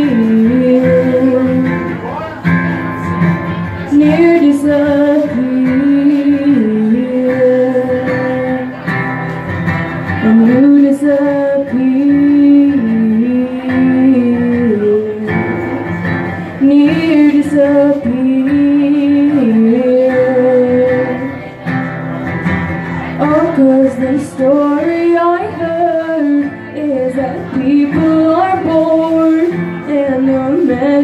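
A woman singing long held notes while strumming an acoustic guitar, in a live solo acoustic performance.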